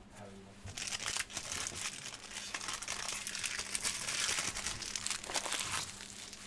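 Plastic wrapper of a trading card pack crinkling and tearing as it is opened by hand, starting about a second in and dying down shortly before the end.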